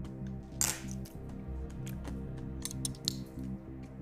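Soft background music with steady held tones, with a few light clicks of cutlery against a plate and a short breathy hiss a little over half a second in.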